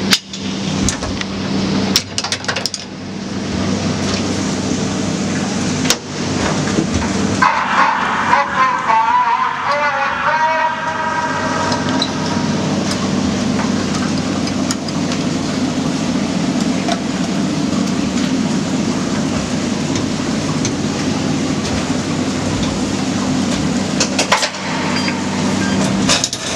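Mine shaft cage travelling in the shaft: a steady rushing rumble with a constant low hum, and metal clinks of harness clips near the start and near the end. About eight seconds in, a wavering squeal rises and falls for a few seconds.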